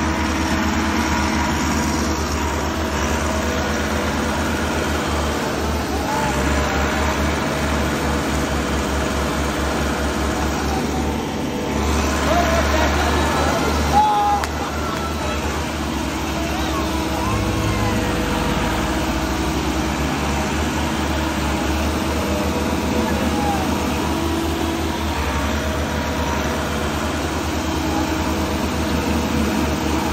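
Two tractor diesel engines, a Massey Ferguson 385 and a second tractor, running at full throttle and labouring steadily under heavy load as they pull against each other in a tug-of-war. They get a little louder a few seconds before the middle.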